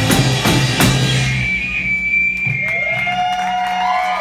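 Live rock band of electric guitars, bass and drum kit playing the last bars of a song, ending with drum hits about a second and a half in. A high guitar note keeps ringing after the band stops, and the crowd starts whooping near the end.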